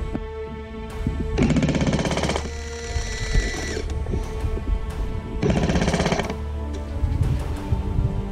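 Airsoft MG42 electric machine gun firing two short full-auto bursts about four seconds apart, each a fast rattle lasting about a second, over background music.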